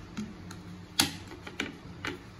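Plastic clamp-style mouse trap being handled and set down on a hard countertop: several sharp plastic clicks and knocks, the loudest about a second in.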